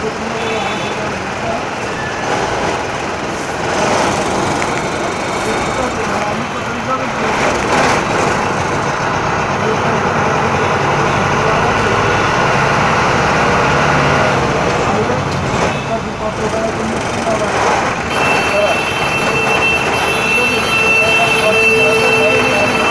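Inside an Ashok Leyland Stag minibus moving through traffic: its engine running under road noise, with people talking. A steady high tone sounds over the last few seconds.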